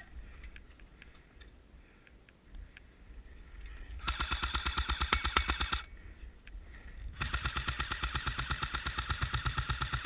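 AK-style airsoft rifle firing on full auto in two long bursts of rapid, evenly spaced shots over a whine, the first about four seconds in and the second from about seven seconds to the end.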